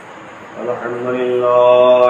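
A man's voice chanting in a slow, melodic recitation style. It comes in about half a second in and swells into a long held note that is loudest near the end.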